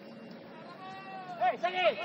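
A person shouting: a drawn-out call starting about a second in, breaking into a few short, loud rising-and-falling yells near the end.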